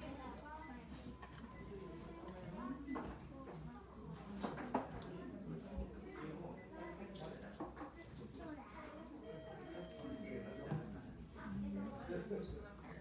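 Indistinct talk of other people in a small dining room, with a few sharp clicks and knocks, the loudest about four and a half seconds in.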